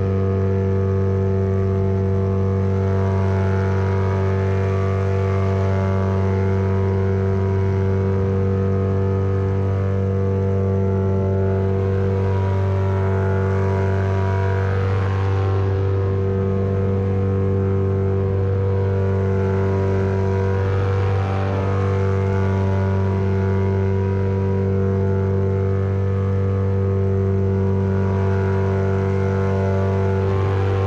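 Paramotor engine and propeller running at a steady cruise throttle in flight, a constant drone that never changes pitch. Wind rushes over the microphone twice, around the middle.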